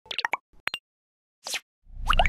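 Cartoon pop sound effects for an animated logo intro: a quick run of short pops that drop in pitch, two more pops, then a brief whoosh, with a low swell starting just at the end.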